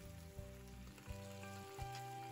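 Beef short ribs faintly sizzling in hot oil as they sear in the stainless inner pot of an Instant Pot on sauté mode, under soft background music with held notes.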